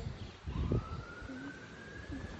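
A faint siren wailing: a single tone that rises and then slowly falls away. A soft thump comes a little under a second in.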